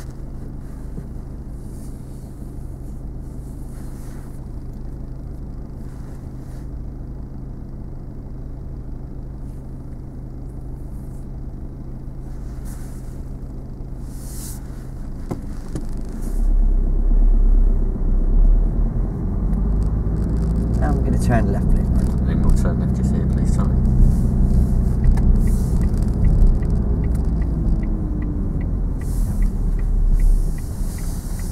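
Car engine heard from inside the cabin: idling steadily while stopped, then about halfway through the car pulls away and the engine note rises and falls through acceleration, louder with low road rumble.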